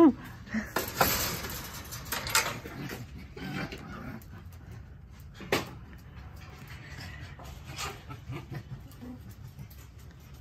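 Captive foxes calling in rough, noisy chatters at the chain-link fence, with a few sharp knocks, the sharpest about five and a half seconds in.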